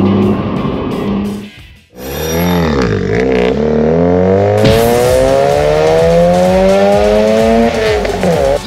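A car engine revving hard: after a sudden cut about two seconds in, its note dips briefly, then climbs steadily for about five seconds as the car accelerates, and breaks off just before the end.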